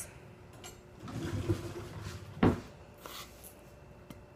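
A kitchen drawer being handled: a soft sliding rumble, then one sharp knock about two and a half seconds in as it is shut.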